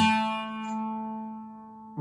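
A single guitar note plucked once on the third string at the second fret (an A), left to ring and slowly fade away.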